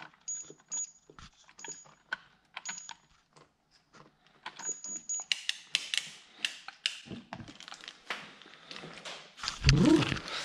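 Handling noise: irregular clicks and light rattles, denser rustling from about halfway, and a thump near the end.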